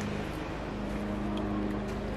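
A steady low hum like a motor running, with a faint even hiss behind it.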